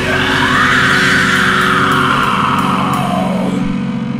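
Deathcore band's studio recording: heavy distorted guitars and bass playing, with a long high note that rises briefly and then slowly falls over about three seconds.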